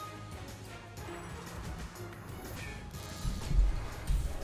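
Online slot game's background music with tumbling-symbol sound effects, and a sudden deep boom about three seconds in.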